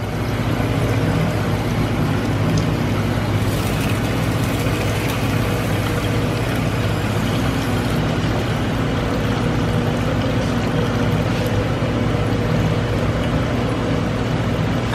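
The FS-Sugar ETL sugarcane juicer's two-horsepower electric motor and gearbox running steadily, driving its stainless steel rollers with a constant hum.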